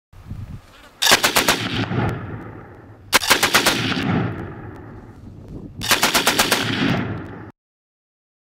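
Machine gun firing three short bursts of rapid fire, each trailing off in a long echo; the sound cuts off suddenly near the end.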